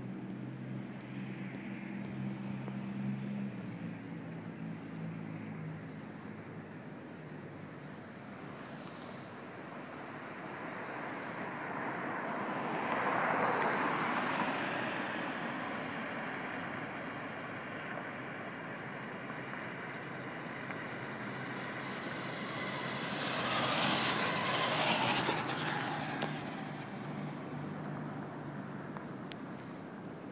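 Vehicles passing one after another: a swelling and fading rush about thirteen seconds in, then a louder one about twenty-four seconds in. A low steady hum sits under the first few seconds.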